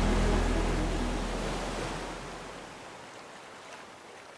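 Ocean surf washing in as a steady rush of noise, fading out gradually.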